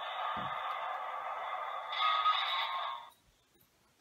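Electronic battle sound effect played through the small speaker of an Elite Force M1A2 toy tank after its 'Try me' button is pressed: a thin, noisy rumble with no bass, rising to a louder blast about two seconds in, then cutting off suddenly about a second later.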